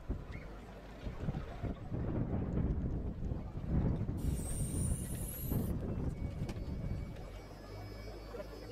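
Wind buffeting the microphone in uneven gusts, a low rumbling noise. About four seconds in, a faint high whine rises in pitch for about a second and a half.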